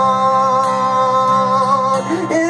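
A man singing a long held note over softly strummed acoustic guitar.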